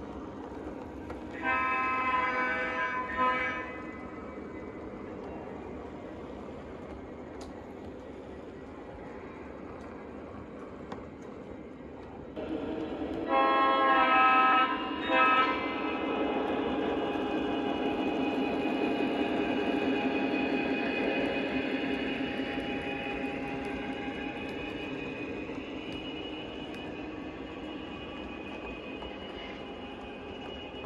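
O gauge diesel locomotive's onboard sound system sounding its horn twice, about 2 s in and again around 13 s in, each a long blast followed by a short one, over the steady rumble of cars rolling on three-rail track. From about 12 s the diesel engine sound grows louder as the locomotive passes close, then fades.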